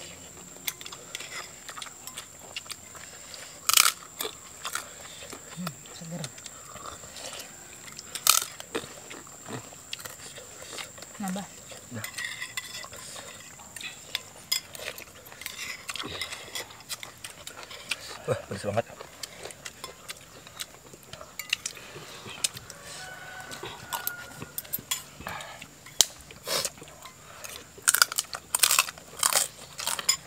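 Spoons clinking and scraping against soup bowls as people eat, in scattered sharp clicks, with a few louder clinks and a busy run of them near the end.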